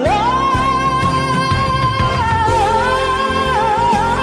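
Soul song with a band: a singer slides up into one long held note, then bends and wavers it in the second half.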